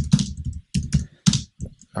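Computer keyboard typing: a quick run of separate keystrokes as code is entered.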